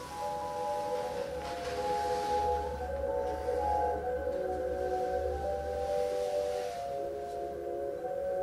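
A slow, tinkling music-box melody of clear chiming notes, the tune of a haunted music box, over a low drone that swells and fades every couple of seconds.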